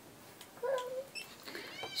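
A pet dog whining quietly twice: a short low whine a little over half a second in, and a brief rising whine near the end.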